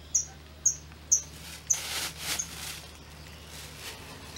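A bird giving short, high chirps, about two a second, through the first couple of seconds. Crickets rustle in a plastic basin as a hand sorts through them, around the middle and near the end.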